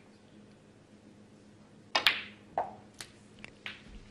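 A snooker shot: a sharp click of the cue ball striking the black about two seconds in, followed by a few fainter knocks as the balls run on. Otherwise a hushed arena.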